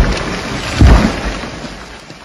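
A large felled tree crashing to the ground: a heavy, deep thud at the start and a louder one a little under a second in, followed by a rumble that fades away.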